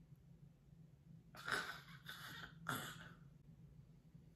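Faint breathing close to the microphone: two noisy breaths a little over a second apart, the second sharper, over a low steady hum.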